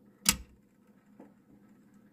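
A single sharp click as a diecast Hot Wheels car is set down on a clear plastic turntable platform, followed by a much fainter tick about a second later.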